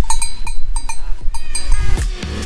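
Cowbells on cattle ringing in short, irregular clanks as the cows move their heads, with music coming in near the end.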